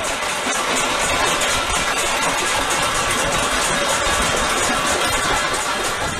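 Many people clapping and banging metal pans and plates with spoons: a dense, steady clatter.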